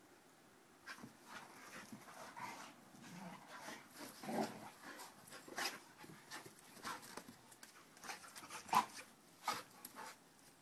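Dogs play-fighting on grass: irregular short dog noises and scuffles starting about a second in, with the sharpest ones near the end.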